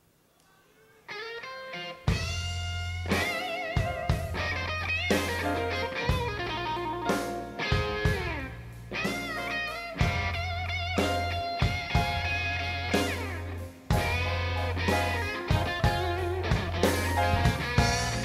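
A live blues band starts a song: an electric guitar comes in alone about a second in, and bass and drums join a second later under guitar lead lines with bends and vibrato.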